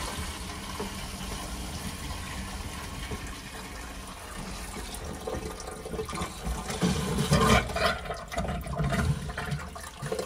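Concealed toilet cistern filling through its fill valve for the first time, a steady hiss of running water. It grows louder and irregular in the last few seconds, with the water spluttering as air is pushed out of a long new supply pipe.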